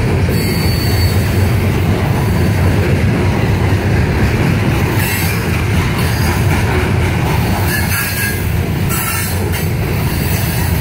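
Loaded CSX coal hopper cars rolling past on the rails: a steady, heavy rumble of wheels on track, with brief thin wheel squeals about half a second in and again near the end.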